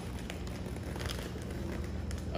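Clear plastic fish-shipping bags rustling and crinkling as they are handled and pulled out of the shipping box, over a steady low hum.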